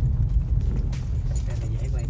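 Steady low road and engine rumble heard inside a moving car's cabin.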